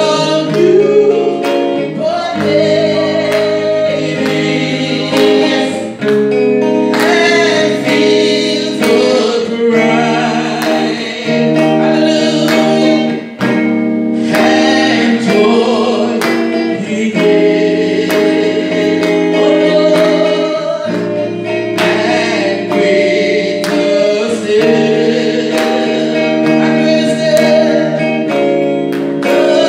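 A woman singing a gospel song through a microphone over music with held chords and a steady beat.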